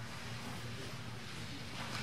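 Quiet room tone: a steady, faint hiss with a low hum, and no distinct events.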